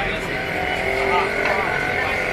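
Spinach pakodas deep-frying in a large kadai of hot oil: a steady sizzle as the batch is scooped with a slotted spoon, over street traffic and voices.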